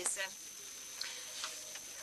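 A spoken phrase ends, then a pause in the speech with faint room tone through the hall's microphones: a thin steady high whine and two faint ticks about a second and a second and a half in.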